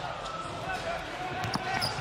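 Basketball dribbled on a hardwood court, with a few faint bounces over the murmur of an arena crowd.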